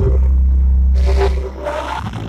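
A loud, held deep bass note from the church's music, distorted on the recording, with a man's voice shouting or singing into a microphone over it in the second half; the bass fades about a second and a half in.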